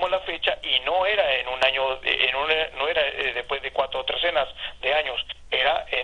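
Continuous talking by one person, with a thin, telephone-like sound.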